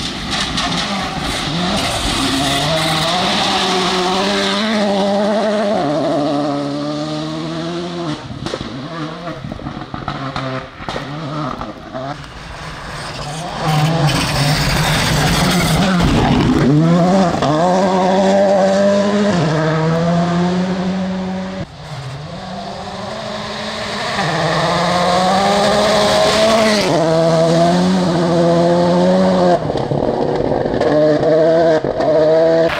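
Rally cars driven flat out on a dirt stage, engines climbing through the revs and stepping down at each upshift, over and over. The engine noise swells and fades with several passes, with a brief drop just after the middle.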